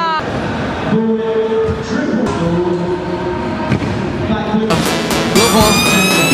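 Background music with a voice singing held notes; about five seconds in it turns louder and busier, with sharp clicks.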